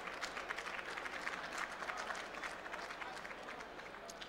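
Audience applauding, a dense patter of many hands clapping that begins to die away near the end.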